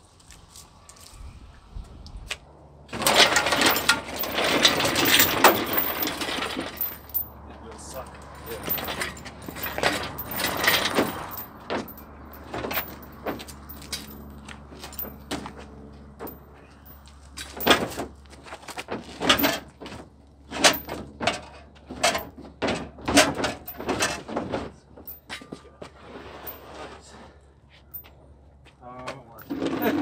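Heavy metal handling as a pulled engine is moved on a shop engine hoist and pushed into a pickup bed: a loud stretch of scraping a few seconds in, then a run of sharp metal clanks and knocks.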